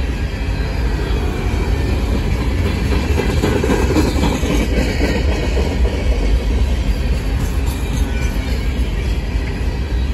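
Refrigerated boxcars of a manifest freight train rolling past close by: a steady rumble of steel wheels on the rails, a little louder about four seconds in.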